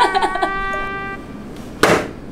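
A held pitched note runs through the first second and stops. Near the end comes one short, sharp hit: a metal shuriken striking the straw target.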